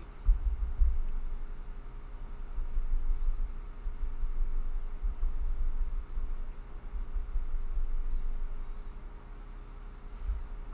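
Low, uneven rumble with a faint steady electrical hum.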